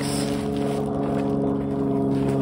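A steady, unchanging mechanical drone at a constant low pitch from a running motor, with light rustling of plastic packaging near the start.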